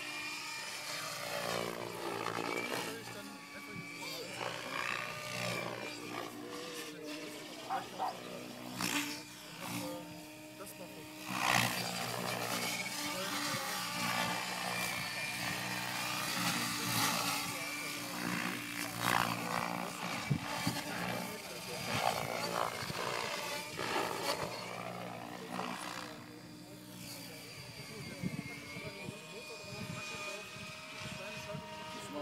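Electric Henseleit TDR radio-controlled helicopter flying 3D aerobatics: its motor and rotor blades whine, rising and falling in pitch with the manoeuvres, with loud swells of blade noise.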